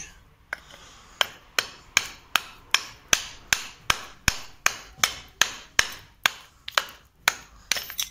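Small hammer striking a hardened patch of plain cement mortar on a concrete floor in a steady series of sharp knocks, about two and a half a second. The mortar is being chipped off to test how well it bonded to the latex-primed surface.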